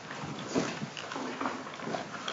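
Indistinct, low voices murmuring in short broken snatches, with small movement sounds from a standing congregation.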